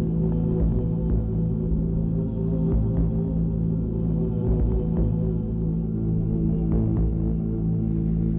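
A steady low droning hum, with faint light ticks scattered through it.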